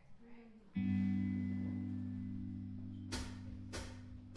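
A guitar chord struck once about a second in and left to ring, fading slowly. Near the end, sharp percussive hits begin at a steady beat, about three in two seconds, leading into the song.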